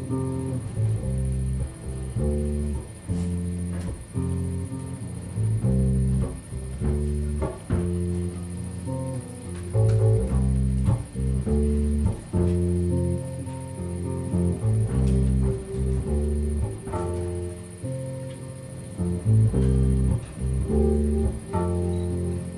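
Live improvised band music: a prominent plucked bass line of short, loud low notes, with guitar notes over it.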